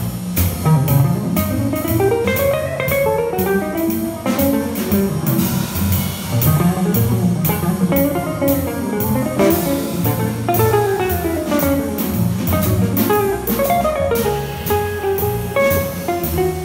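A live jazz trio: an archtop electric guitar plays runs of single notes that climb and fall, over a plucked double bass and a drum kit keeping steady time on the cymbals.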